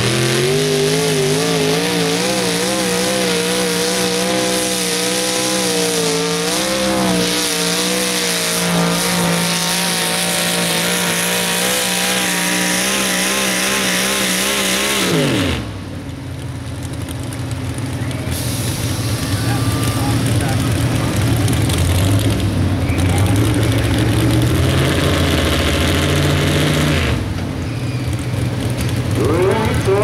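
Supercharged engine of a mini-modified pulling tractor running at high revs under load while dragging the sled, its pitch wavering. About halfway through, the revs drop away quickly as the throttle comes off, and the engine settles to a low, uneven idle.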